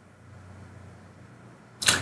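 Faint steady low hum of room tone on a desk microphone, broken near the end by a short, sharp rush of breath drawn just before speaking.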